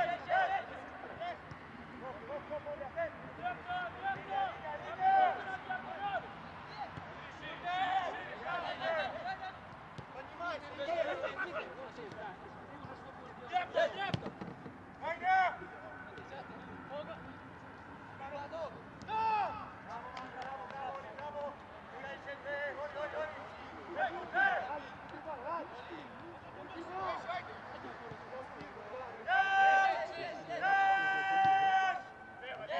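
Players and coaches calling out across a football pitch, with a few sharp ball kicks about halfway through. Near the end a referee's whistle starts: a long, steady tone.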